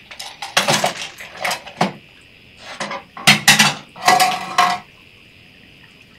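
Small hard desk objects being handled and set down: a pencil cup with its pens tipped and moved, giving a quick series of clinks and clatters, one of them ringing briefly near the end. After that only a faint steady high chirr remains.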